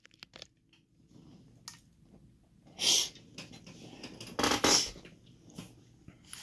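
Lock picks and small metal tools being handled and set down on a workbench: a few light clicks, then two short scrapes about three and four and a half seconds in.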